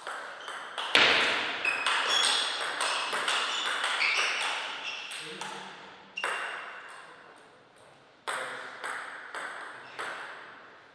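Table tennis ball in a rally: a quick run of sharp clicks with short ringing pings as it strikes the rackets and the table, for about five seconds. A single loud hit comes about six seconds in, then a few slower, evenly spaced clicks near the end.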